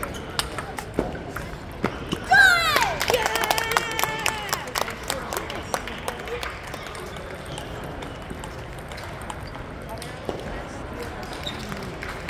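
Table tennis balls clicking on paddles and tables across a busy playing hall. A loud shout falling in pitch comes about two seconds in, followed by a couple of seconds of voices.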